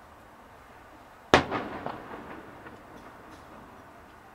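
Aerial firework shell bursting: one loud bang about a second in, followed by a few fainter pops and echo that die away.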